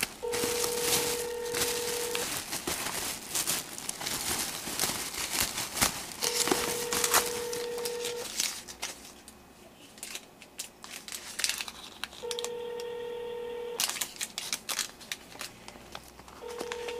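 Telephone ringback tone heard through a phone's speaker: a steady two-second tone that repeats about every six seconds, three times, as the called number rings unanswered. A plastic bag crinkles and rustles over the first half.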